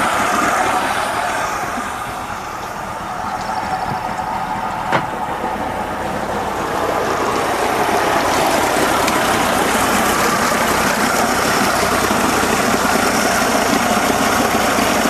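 Mercury 60 hp three-cylinder two-stroke outboard idling in forward gear, dipping slightly a couple of seconds in, with a single click about five seconds in. It settles at about 600 rpm, a little below its 650–750 rpm idle spec, with its spark plugs fouled by storage oil.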